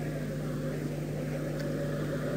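A steady low hum over faint background noise.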